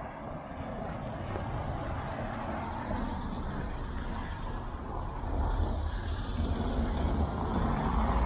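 A car driving along the road, a steady noise that grows slowly louder, with a deeper low rumble coming in about five seconds in.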